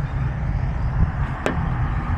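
Steady low outdoor rumble of road traffic and wind on the microphone, with one sharp click about one and a half seconds in.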